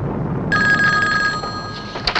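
Telephone bell ringing: one short ring lasting under a second, starting about half a second in and then dying away, over a fading low rumble.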